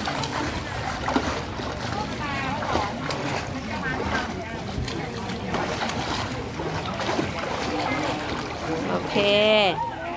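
Water splashing from a swimmer's kicking legs while she floats on her back, feet breaking the surface, with faint voices around the pool.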